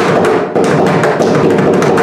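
Two mridangams played together in fast, dense strokes, with a brief let-up about half a second in, performing a mohra in khanda jati jhampa tala.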